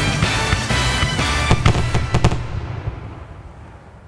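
Fireworks going off in rapid bangs and crackles, mixed with music. The loudest bangs come near the middle. From about two and a half seconds in, the whole sound fades away.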